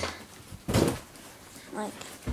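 A short, loud rustling thump of a cardboard box being handled and shifted, about a second in.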